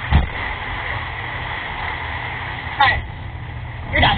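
Low-fidelity surveillance-camera audio of a parking lot: a steady low rumble and hiss with a faint steady whine, broken by brief raised voices just after the start, about three seconds in and at the end.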